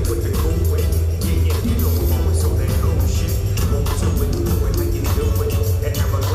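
Live concert music played loud over an arena sound system, with a heavy, continuous bass line and a steady beat.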